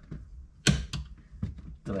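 A clip-on plastic trim piece around a car's gear shifter being pried loose by hand: one loud, sharp snap about two-thirds of a second in, then a few fainter clicks.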